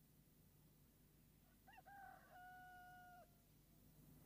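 A rooster crowing once, faintly, about two seconds in: a short rising note, then a long held one that stops abruptly.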